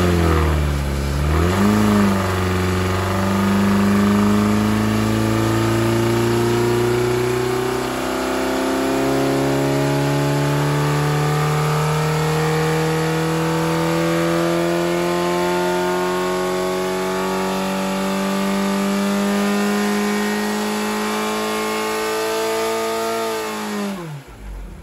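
2.0-litre Ford Pinto four-cylinder engine with a 32/36 twin-choke carburettor, running under load on an engine dyno during a standard baseline power run. After a brief dip and recovery at the start, it pulls at full throttle with revs climbing steadily, past about 4,500 rpm midway. The throttle is shut near the end and the revs fall away.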